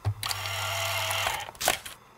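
Small label printer printing: a click, then a steady whirring hum for about a second as the slip feeds out, then a sharp snap near the end as the printed label is pulled off.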